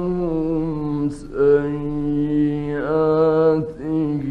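A man's voice in melodic Quran recitation, holding long drawn-out notes with ornamented pitch. It breaks off briefly about a second in and again near the end.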